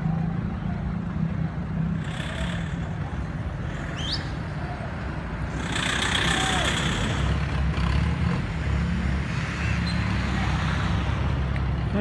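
Motor vehicle engines running in street traffic, with a pickup truck driving past close by about six seconds in. A short rising squeal comes about four seconds in.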